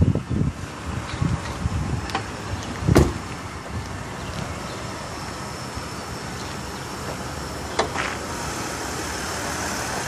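A car door shutting with a single heavy thud about three seconds in, then sharp clicks near eight seconds as the hood's safety catch is released and the hood is lifted, over steady background noise.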